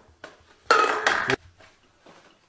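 A short clatter of objects being rummaged in a drawer, lasting just over half a second and starting a little under a second in.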